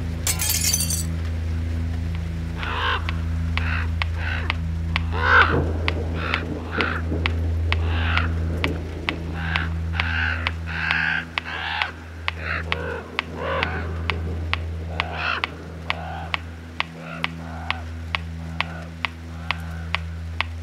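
Glass shattering briefly at the start, followed by repeated caws and croaks from a crow-family bird over a steady low drone. From a few seconds in, a clock ticks evenly, about twice a second.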